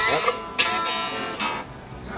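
Guitars strummed informally. A chord struck about half a second in rings out and fades toward the end.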